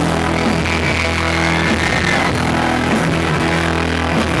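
Live band music in an instrumental passage: electric guitar over long held low bass notes, with no singing.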